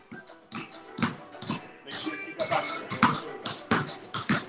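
Two basketballs dribbled fast and hard on a concrete garage floor, pushed back and forth between the legs: a quick, uneven run of bounces, about four a second. Music plays faintly underneath.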